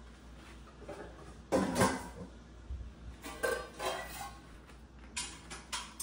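Metal pots and pans clanking against each other as they are stacked into a plastic storage bin: a series of separate knocks and clinks, the loudest about a second and a half in.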